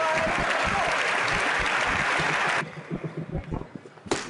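Spectators in a sports hall applauding after a table tennis point. The applause cuts off suddenly about two and a half seconds in, leaving a quieter hall with a few soft knocks.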